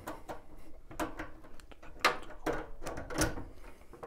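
Irregular small metal clicks and light knocks as a retaining clip is worked off a gas boiler's primary heat exchanger pipe connection by hand and screwdriver, the loudest about two seconds in and just after three seconds.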